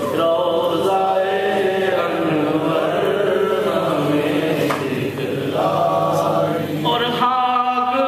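Male voices chanting a naat unaccompanied, several sustained sung lines overlapping. About seven seconds in, a single male voice takes up the line with a wavering pitch.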